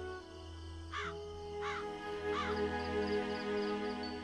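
A crow cawing three times, evenly spaced, starting about a second in, over slow, sustained background music.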